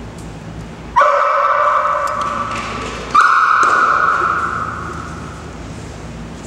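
Black Labrador Retriever giving two long, high-pitched howling cries on cue: one about a second in, held for about two seconds, and a higher one just after three seconds that fades away.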